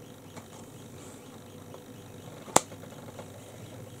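Quiet close-miked room tone with faint small handling ticks, broken by a single sharp click about two and a half seconds in.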